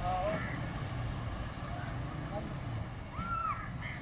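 Station platform ambience: a steady low rumble from the departing passenger train, faint voices of people, and a crow cawing twice near the end.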